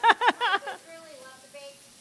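A woman laughing in a quick run of short bursts that ends within the first second, followed by fainter talk.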